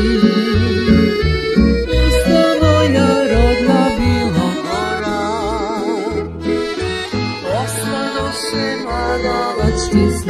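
Croatian folk ensemble of tamburicas, accordion, violin and double bass playing a song, the accordion prominent over a steady plucked bass line, with a note wavering in vibrato about halfway through.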